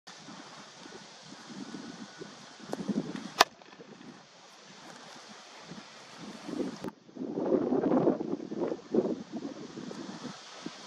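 Wind buffeting the microphone, with one sharp crack about three and a half seconds in, typical of a cricket bat striking the ball. A second, smaller knock comes near seven seconds, followed by heavier wind gusts.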